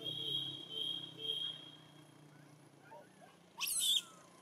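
A macaque gives a short shrill squeal near the end, after a few faint chirps. Before that a steady high whine sits over a low hum for the first second and a half.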